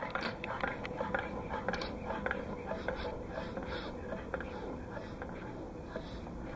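Faint puffs of air from a converted air compressor's cylinder as its ringless pistons are worked by hand, mixed with small clicks and handling knocks. The puffs show that the pistons still hold a seal with their rings removed.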